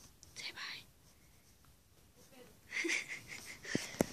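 A person whispering: two short, breathy whispered bursts, about half a second in and about three seconds in, with quiet between. A sharp click near the end.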